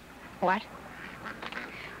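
A woman asks "What?" once, briefly and with a rising pitch, over faint outdoor background noise.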